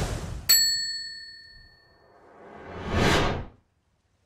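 Logo sting sound effects: a short whoosh, then a bright bell-like ding about half a second in that rings out over a second or so. A swelling whoosh follows, builds and cuts off suddenly near the end.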